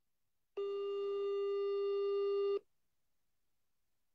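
A telephone ring tone on the line, heard once as a steady, low-pitched beep about two seconds long, starting about half a second in. It is the tone of a call waiting to be answered.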